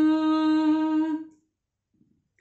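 A woman's unaccompanied voice holding one long, steady note at the close of a Punjabi tappe line. The note fades out just after a second in.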